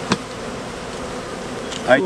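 Honey bees buzzing around an open hive, a steady hum of many bees, with one short click just after the start.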